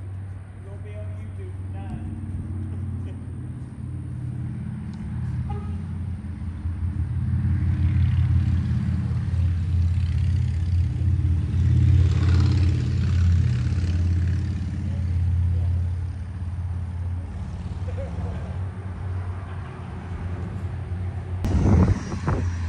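A low, steady engine drone that swells through the middle and then eases off, with faint voices in the background.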